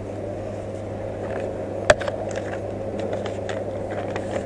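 Steady hum and murmur of a shop's background noise. A single sharp click comes about two seconds in, with a few fainter clicks and rustles around it.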